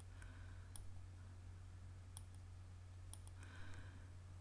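Faint, sharp computer mouse-button clicks, four or five of them spread a second or so apart, two in quick succession near the end.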